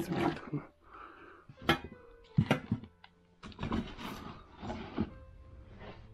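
Hands rummaging through a cardboard box of old tin cans and a plastic bag: a few sharp knocks and clinks from about two seconds in, then rustling and shuffling of the contents.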